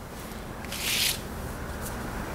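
A brief soft rustle about a second in: a hand moving over the paper game board on the tabletop as the glass marble is taken away.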